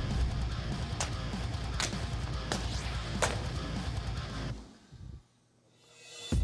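Machete blade slashing through hanging fabric bags: four sharp swishing cuts, a little under a second apart, over rock guitar music. Near the end the music cuts out into a brief near silence.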